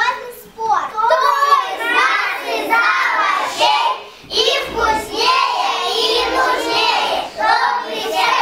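A group of young children's voices together in unison, reciting a verse in chorus.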